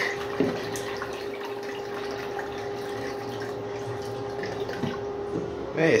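Miniature model toilet flushing: a steady rush of water swirling and draining from the small bowl, ending in a siphon. A faint steady hum runs under the water.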